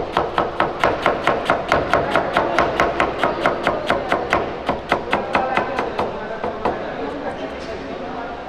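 Cleaver knife chopping cabbage into fine julienne shreds on a plastic cutting board: a fast, even rhythm of about five knocks a second, the blade striking the board at each stroke. In the last two seconds the strokes thin out and get quieter.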